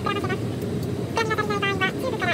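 Steady cabin hum of an Airbus A320 airliner, with a voice speaking the safety announcement at the start and again about a second in.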